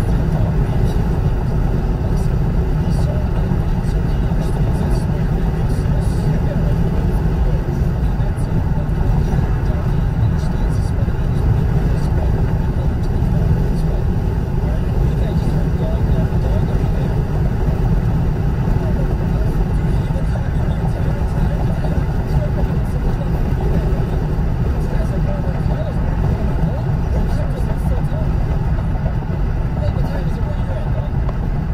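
Steady low road and engine rumble inside a car's cabin cruising at highway speed.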